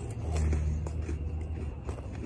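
Low rumble of a passing motor vehicle, swelling about half a second in and easing off, with a few faint clicks over it.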